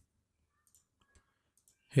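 Near silence with two faint, brief computer clicks about half a second apart near the middle. A man's voice begins right at the end.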